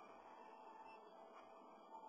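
Near silence: faint hiss of room tone with a faint steady tone.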